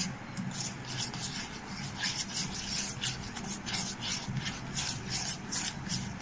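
A hand rubbing and pressing a crumbly wheat flour, ghee and sugar mixture against the sides of a metal bowl, a rasping stroke repeating about two or three times a second.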